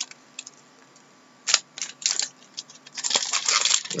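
Trading cards being handled and flipped through: one sharp card snap about a second and a half in, a few lighter flicks, then a quick run of crackling card rustling near the end.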